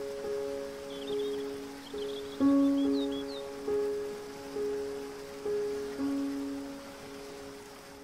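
Slow, gentle solo piano music, single notes struck every second or so and left to ring and fade, over a steady water hiss. A few faint high bird chirps come in the first half. The loudest note falls about two and a half seconds in.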